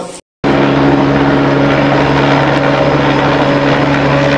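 Helicopter in flight: a steady, loud rotor and engine drone with a constant low hum, starting abruptly after a brief silence.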